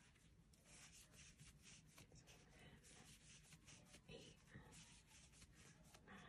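Very faint rubbing and scratching of a crochet hook drawing acrylic yarn through loops as double crochet stitches are worked, in quick soft strokes several times a second.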